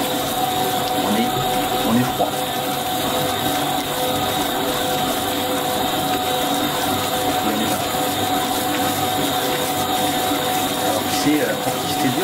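Stand mixer running steadily as its spiral dough hook kneads brioche dough in a glass bowl, with a constant motor and gear whine. The dough is coming together and starting to pull away from the sides of the bowl.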